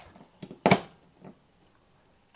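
Mains power being switched on to a PTC hot plate: a few small clicks and knocks, then one much louder sharp click about two-thirds of a second in.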